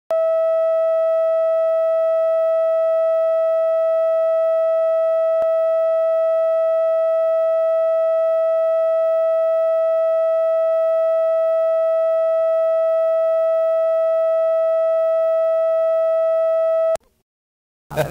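Steady line-up reference tone recorded with the colour bars at the head of an analogue videotape: one unwavering pitched tone at constant level that cuts off suddenly near the end.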